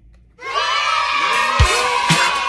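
A crowd cheering and shouting over music, a celebratory sound effect that starts suddenly about half a second in and is loud, with a deep thump near the end.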